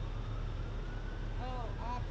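Parked fire engine's diesel engine idling: a steady low rumble. Distant voices start near the end.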